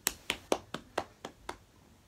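A run of about seven sharp hand taps, roughly four a second, stopping about a second and a half in.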